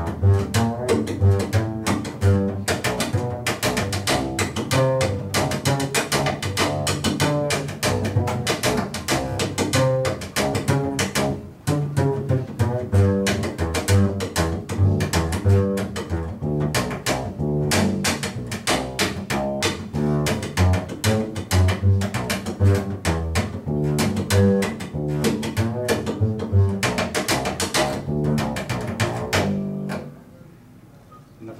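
Upright bass (double bass) plucked with the fingers, a fast, unbroken run of notes with sharp attacks, dipping briefly about eleven seconds in.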